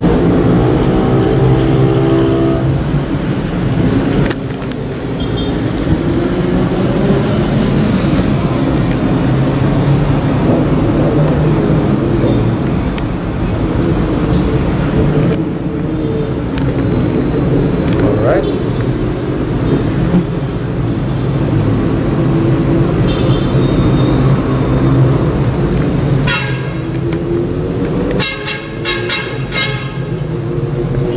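Indistinct voices over steady traffic noise, with a vehicle horn tooting near the end.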